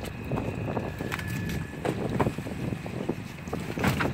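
Wind rumbling on the microphone, with faint scattered knocks and a sharp click near the end.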